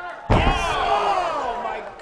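A fighter's body slammed down onto the padded canvas of an MMA cage: one loud thud about a third of a second in, followed at once by voices crying out in a long cry that falls in pitch.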